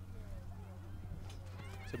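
Faint background with a steady low electrical hum and faint, distant wavering voices.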